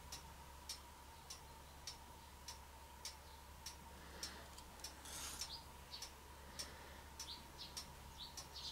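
Faint, regular ticking, a little under two ticks a second, with a few short, faint high chirps about five seconds in and near the end.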